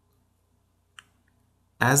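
Near silence with a single short click about a second in, then a man's voice starts near the end.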